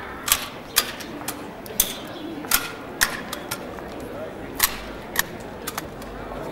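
Hard-soled leather boots striking cobblestones: sharp, loud clicks about two a second, uneven, like a few people walking close by.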